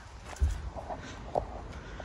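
A few footsteps and handling knocks against a low background rumble: a thump about half a second in, and a sharper click shortly before the end.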